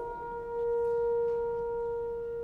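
A wind instrument of a youth symphony orchestra holding one long, steady note in a quiet passage of a concert piece. The note swells a little about half a second in.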